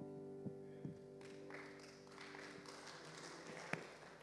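A held keyboard chord at the close of a worship song fades away in the first second. Faint room noise follows, with a few light knocks.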